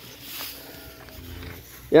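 Cow feeding on dry straw, its muzzle rustling the stalks, faint. A faint animal call sounds in the background through the middle.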